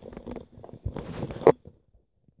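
Small clicks and rustles of toys and objects being handled, with one sharp click about one and a half seconds in.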